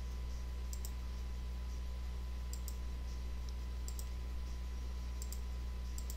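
Computer mouse clicking about four times, each a quick pair of sharp clicks, spread across a few seconds. Under it runs a steady low electrical hum.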